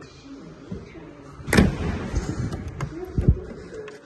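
Knocks and rustling from moving about inside a 1933 Talbot 75's cabin. A sharp knock comes about one and a half seconds in and a dull thump a little after three seconds, like a car door or body panel being handled.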